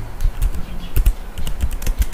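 Typing on a computer keyboard: a run of unevenly spaced keystrokes.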